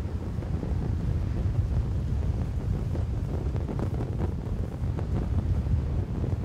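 Wind buffeting a microphone: a low, fluttering rumble with no music.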